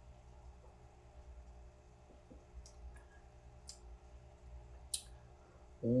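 Faint mouth clicks and lip smacks while a sip of beer is tasted: three sharp clicks in the second half, over a low room hum, with a voice starting at the very end.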